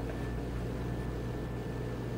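Steady low hum with a faint even hiss and nothing else happening: room tone.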